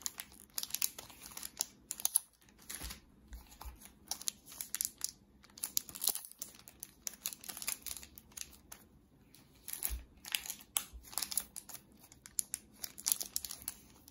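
Clear plastic wrapping on bundles of banknotes crinkling as the bundles are handled and turned over, in irregular bursts of crackles.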